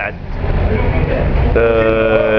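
Steady low rumble of street traffic. About halfway through, a flat, steady held tone begins and carries on.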